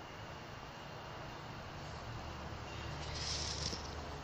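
Low, steady background rumble with a hiss that swells briefly about three seconds in.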